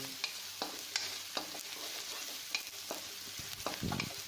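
Chopped onions sizzling as they fry in hot oil in a heavy-bottomed kadhai, with a spatula scraping and clicking against the pan as they are stirred. A louder knock comes near the end.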